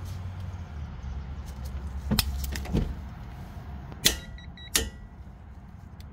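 A torque wrench tightening a brake caliper bolt: a couple of sharp clicks, then about four seconds in a louder click as the wrench reaches 65 ft-lb. The digital torque adapter then gives a short run of high beeps signalling the target torque, over a steady low hum.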